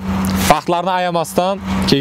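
A man talking, with a steady low hum underneath; a short burst of hiss comes just before the talk starts about half a second in.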